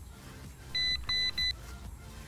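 Three electronic beeps, two longer ones and then a short one, each a steady high pitch, over background music.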